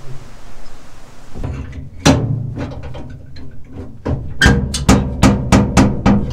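Background music fades in about a second and a half in, with percussion: a strong drum hit about two seconds in, then a steady beat of drum hits about three a second in the last part.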